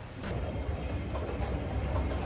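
Steady low mechanical rumble of a moving escalator, starting just after a brief click.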